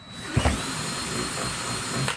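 Cordless drill with a 5/16-inch bit enlarging a pilot hole in PVC pipe. The motor spins up with a rising whine about half a second in, runs steadily while the bit cuts, and stops near the end.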